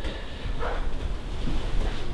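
Low rumble and hiss of handling noise on a handheld camera's microphone as it pans, with a faint short sound about two-thirds of a second in.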